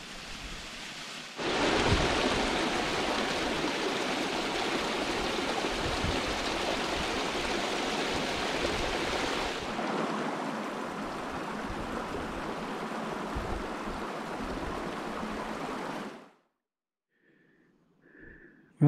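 Mountain stream rushing over rock slabs at the lip of a waterfall, a steady rush of water. It is fainter for about the first second and a half, then louder, and cuts off suddenly near the end.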